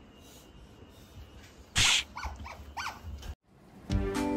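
A loud, brief noisy burst, then a cat's three or four short rising-and-falling calls. The sound cuts off suddenly.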